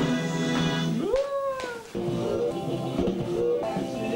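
Television music heard through a TV set's speaker over a production-company logo: held chords, then a note sliding up and falling away about a second in, followed by more music.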